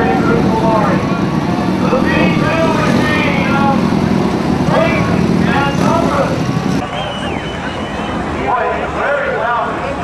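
Speedway sidecar engines running at the dirt track, with people's voices over them; the engine noise drops about seven seconds in.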